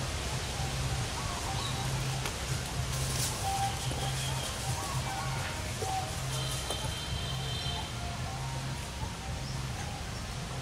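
Outdoor woodland ambience with scattered faint bird calls, including one longer, higher call about two-thirds of the way through, over a low hum that comes and goes.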